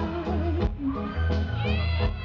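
Live rock band playing: a high falsetto male vocal over electric guitar, bass and drums, the voice gliding up and back down in the second half.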